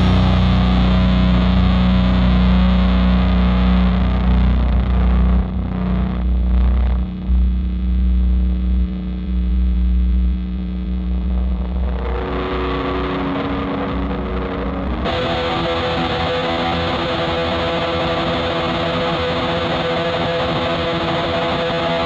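Black/doom metal with heavily distorted electric guitars over a heavy low end. The sound thins out about five seconds in, a guitar line comes back around twelve seconds, and the full band returns at about fifteen seconds.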